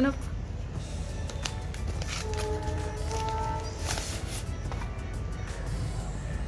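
Background music with a few sustained notes, over the crackle and tearing of paper wrapping being pulled off a book package, loudest about four seconds in.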